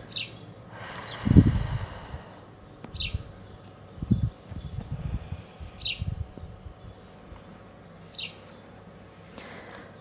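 A bird chirping: four short, high calls spaced two to three seconds apart. Between them come a few low rumbles, the loudest about a second in.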